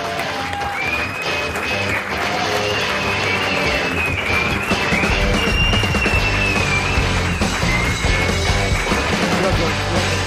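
Music playing: a high, wavering melody line over a band backing, with heavier low notes coming in about five seconds in.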